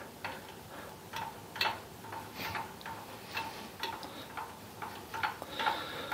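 Faint, regular ticking about twice a second from the mini mill's table being hand-cranked along while a dial test indicator rides the vise jaw.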